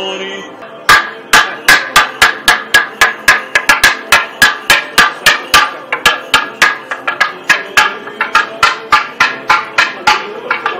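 Toaca, the Orthodox monastery semantron, struck with a mallet in a fast, steady rhythm of about three sharp, ringing strikes a second, starting about a second in. It is sounded to accompany the procession of the icon around the church.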